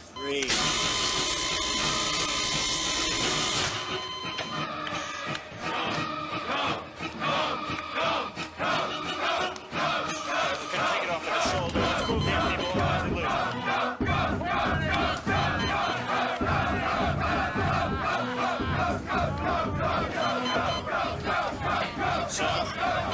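Film soundtrack of an electroshock-therapy scene: a loud electric buzz lasting about three seconds near the start, then a dense crowd shouting and cheering over music.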